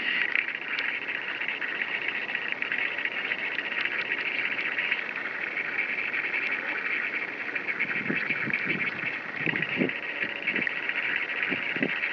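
Steady, high-pitched chorus of insects, an unbroken dense buzzing trill, with a few soft low bursts in the last few seconds.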